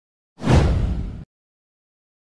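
A whoosh sound effect used as a transition. It hits suddenly, fades a little over under a second, and cuts off abruptly.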